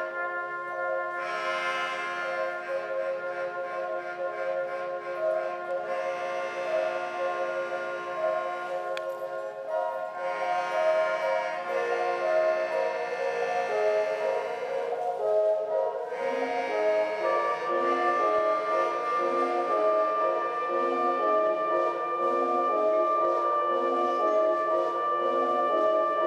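Live band playing an instrumental passage: layered, sustained droning tones with no drumbeat, swelling and fading in waves, joined about two thirds of the way through by a repeating pulsing lower figure.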